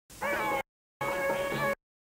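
Live Turkish folk dance tune played on a sustained-tone melody instrument over a low changing bass note. The music cuts out completely twice for a fraction of a second, dropouts typical of a worn videotape.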